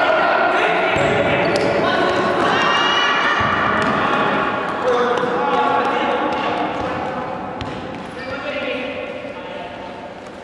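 Futsal ball being kicked and passed, several sharp thuds, with players shouting and calling to each other, all echoing in a large gym hall.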